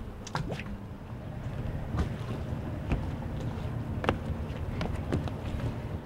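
Low wind rumble on the microphone beside a docked sailboat, with a few faint, light knocks every second or so.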